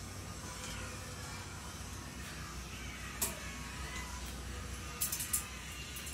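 Dumplings frying in a small pan on a gas hob: a faint steady sizzle over a low hum, with metal tongs clicking against the pan about three seconds in and a few times around five seconds.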